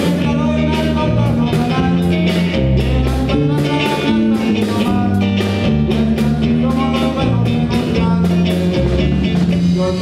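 Live norteño band playing an instrumental passage: button accordion carrying the melody over electric guitar, bass guitar and a steady drum beat.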